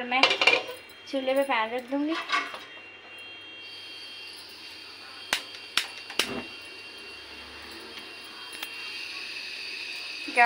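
A gas stove burner hisses steadily as the gas is turned on. A handheld spark lighter clicks three times in quick succession to light it, and the blue flame hisses on under an aluminium karahi.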